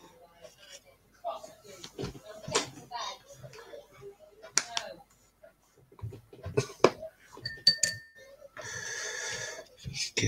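A paintbrush tapping and scraping in a small foil paint tray while thinned black model paint is stirred, giving a few sharp clicks and clinks. A steady noise comes in for the last second or so.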